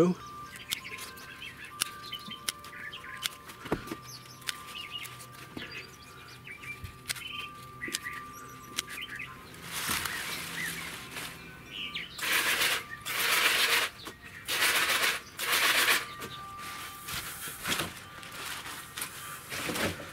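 Freshly picked leaf lettuce rustling and crinkling in a plastic bus box as a hand stirs and lifts the leaves, in a string of short bursts through the second half. Before that it is quieter, with a few faint clicks.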